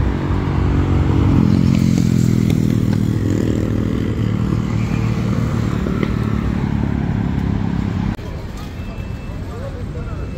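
A motor vehicle engine running close by in city street traffic, a low steady hum that swells about a second in, then falls away suddenly near the end, leaving quieter traffic noise.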